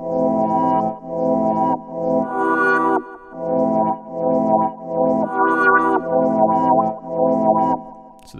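Synth arpeggio sample playing a repeating pattern of chords, in notes just under a second long. It is heard dry, without OTT multiband compression.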